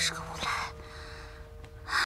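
A woman's breathy voice: a short exhaled huff and a soft, muttered exclamation within the first second, then another breath near the end.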